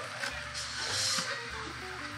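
Chef's knife cutting through the crisp crust of a breaded, deep-fried sushi roll on a plastic cutting board: a short rasping crunch in the middle, lasting under a second.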